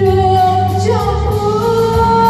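A woman singing a Vietnamese song through a microphone, holding long notes and stepping up to a higher held note about a second in, over musical accompaniment with a steady bass line and a light cymbal beat.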